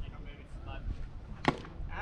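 Faint spectator voices, then a single sharp knock about one and a half seconds in.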